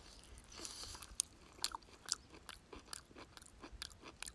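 A person chewing a mouthful of raw, sinewy camel meat: faint, irregular clicks and smacks of the mouth, a few a second.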